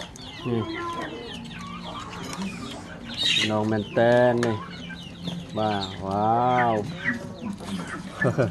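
Domestic chickens clucking close by, with a person's voice calling out briefly twice over them.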